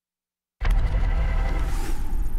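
Dead silence, then about half a second in a sudden steady rushing noise starts: a newscast transition sound effect coming out of the commercial break.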